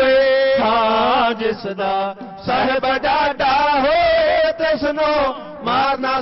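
A solo voice chanting Sikh devotional verse in long, wavering melodic phrases, with short pauses between the phrases about two seconds in and again shortly after five seconds.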